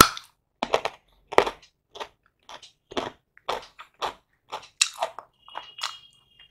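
Close-miked crunchy chewing of raw carrot with rice: a sharp bite at the start, then crisp crunches about twice a second.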